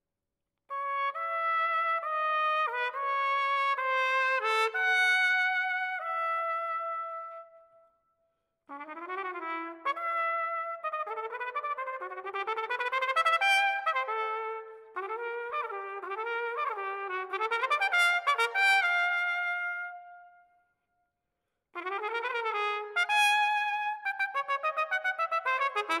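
Solo unaccompanied trumpet playing three phrases with short breaks between them: first a line of sustained notes, then quick slurred runs, then rapid tongued notes near the end. The notes ring on into a large, reverberant hall at the end of each phrase.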